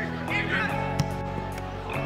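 Background music with sustained chords and a melodic line above them, changing chord a few times. There is a single sharp click about a second in.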